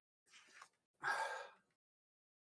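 A man breathing out hard: a short faint breath, then a longer, louder sigh about a second in. It is a pained reaction to the lingering mouth burn of an extremely hot candy.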